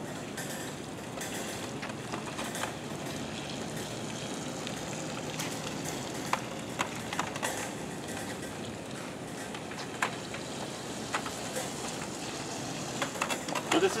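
Rascal 235 electric mobility scooter driving slowly across wet concrete: a steady hiss from its motor and tyres on the wet surface, with scattered light clicks.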